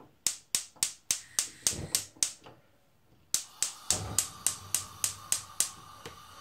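Gas hob's spark igniter clicking rapidly, about three or four clicks a second, in two runs with a short gap between. A steady hiss comes up under the second run, about three and a half seconds in, and a blue flame is burning under the pan by the end.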